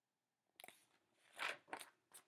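Picture book pages being handled and turned: a few short papery rustles, the first about half a second in and the rest in the second half.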